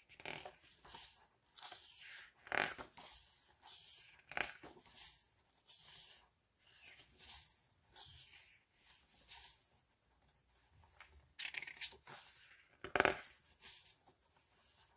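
Pages of a K-pop album's photo book being turned one after another by hand. Each turn is a short papery swish, about one a second, with the sharpest ones a few seconds in and near the end.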